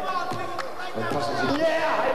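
A basketball bouncing on the court a few times, amid the voices of a crowd in a large hall.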